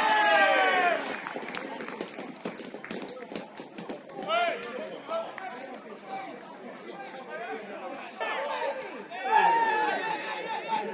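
Footballers shouting to each other across the pitch during open play. There is a loud shout falling in pitch at the start, others about four seconds in and near the end, and scattered thuds and knocks of feet and ball in between.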